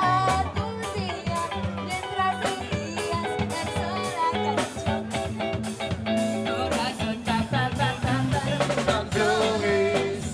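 A live rock band playing a song: electric guitar, electric bass and drum kit, with a steady drum beat.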